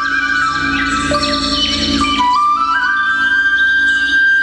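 Indian classical dance music: a flute plays a held melody that steps slowly up and down in pitch over a steady drone, with a flurry of high chimes in the first half.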